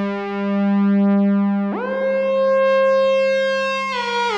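Moog modular synthesizer holding a steady, buzzy low note whose loudness swells slowly. A little under two seconds in, a brighter, higher tone sweeps in and holds.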